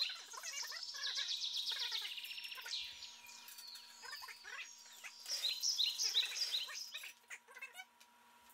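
Pan sauce simmering and sputtering around a seared venison tenderloin in a frying pan, giving off faint, high, chirping squeaks in clusters.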